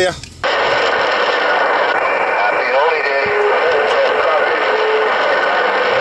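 Radio speaker hissing with the static of an open channel on 27.085 MHz, with faint, garbled distant voices. A low steady whistle, like a heterodyne, holds for about two seconds in the middle.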